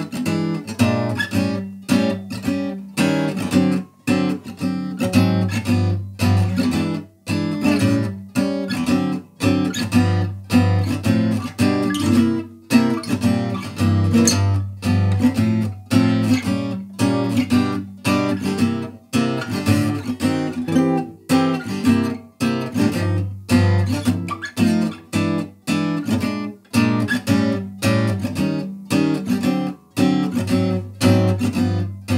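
Gypsy jazz (Selmer-style) acoustic guitar strummed with a pick, playing a steady, rhythmic chord accompaniment through a blues progression in G with three-finger chord shapes that move between chords.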